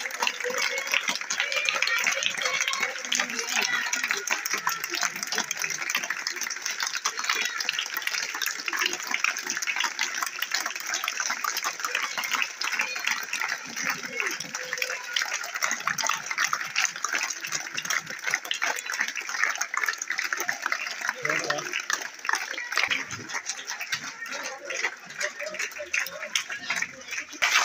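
Many schoolchildren clapping their hands in steady, continuous applause, with voices mixed in.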